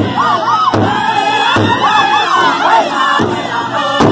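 A powwow drum group singing in high voices while striking a large shared drum in unison, with the beats coming a little under a second apart.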